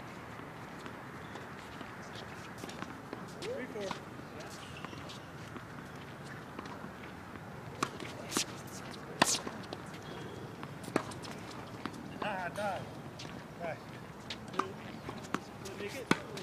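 Tennis balls struck by racquets and bouncing on a hard court during a doubles point: a few sharp pops from about halfway through, the loudest a little after that, with more near the end. Faint voices and footsteps in the background.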